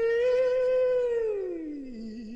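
A doo-wop singer holding a high note with vibrato, then sliding down about an octave in the second half, with little accompaniment audible.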